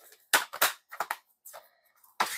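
Sharp plastic clicks and snaps from a DVD case and its disc hub being handled. The two loudest come close together in the first second, followed by a few lighter clicks.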